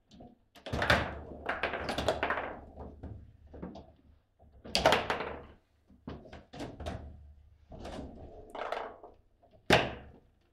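Table football play: the hard ball being struck by the rod-mounted figures and knocking against the table, with rods clacking, heard as a run of sharp knocks and clacks in bursts. The strongest hits come about five seconds in and just before the end.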